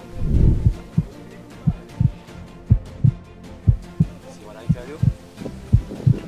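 A deep, thumping beat: short low thumps mostly in close pairs, a pair about every second, with a faint voice and music underneath.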